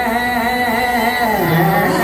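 Live country band playing, with a sustained wavering lead line that slides down in pitch and back up near the end.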